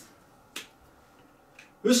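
A single short, sharp click about half a second in, with a fainter tick a second later, in an otherwise quiet pause. A man's voice starts again near the end.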